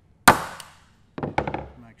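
A wood chisel struck once, driving its edge down into timber, with a sharp crack that rings off quickly. About a second later comes a quick run of lighter clicks and taps of the chisel in the hinge recess.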